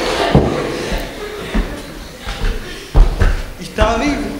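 Indistinct talking in a hall, broken by several short knocks and thumps, the loudest about three seconds in.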